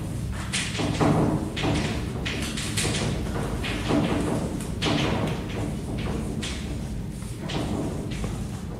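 Chalk writing on a blackboard: a string of short, uneven tapping and scraping strokes, about two a second.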